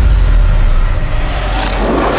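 Dramatic sound-effect whoosh over a deep rumble: a rushing noise swells toward the end as the picture heads into a freeze-frame.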